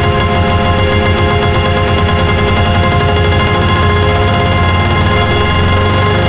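Black MIDI played on a synthesized piano soundfont (Khor Keys 3) with added reverb: a dense cluster of many notes held at once, over a very fast rattling repetition in the low notes, loud and steady.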